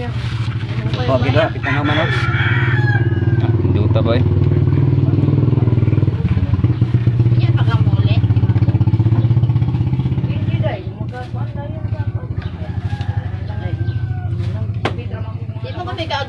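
A small engine running steadily, loud for about the first ten seconds, then dropping sharply to a lower level and running on; a few voices are heard over it.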